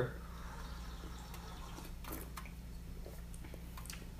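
Quiet room with a steady low hum and faint hiss, and a few soft clicks of small porcelain teaware being handled.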